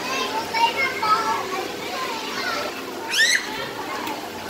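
Children's voices and chatter filling a busy indoor play area, with one child's high-pitched squeal about three seconds in.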